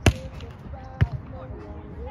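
A volleyball smacked hard by hand on a jump serve right at the start, then a second sharp smack of the ball about a second later.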